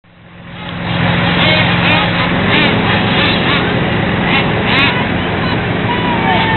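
A radio-controlled car's electric motor whirring in about six short bursts, each rising and falling in pitch, over a steady low engine hum.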